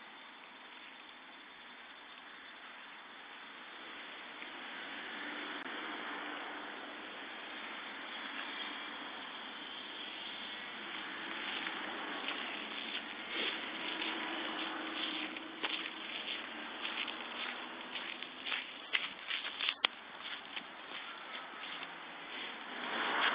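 Faint outdoor background noise: a steady hiss that swells about four seconds in, joined from about halfway through by irregular clicks and rustles, the sharpest ones near the end.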